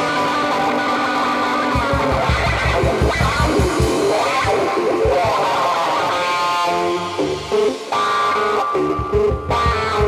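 Live electric guitar and drum kit playing bluesy rock. A gold-top Les Paul-style guitar with soapbar pickups plays through an amp, and a driving low beat comes in about two seconds in.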